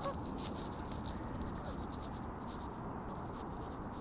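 Steady outdoor background noise with faint irregular footsteps and rustle from walking on a paved path, and one short Canada goose honk right at the start.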